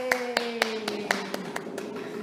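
A man's voice holding one long note that slowly falls in pitch, over sharp hand taps at about four a second, patting out mock applause on the body of a classical guitar.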